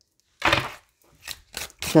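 Tarot cards being handled on a table: a short rustle about half a second in, then a few light clicks.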